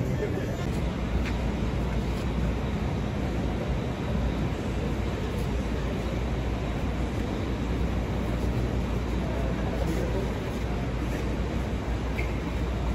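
Steady low rumble of city street traffic, with faint voices mixed in.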